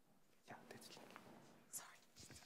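Near silence in a seminar room, with faint, soft voices like whispering from about half a second in.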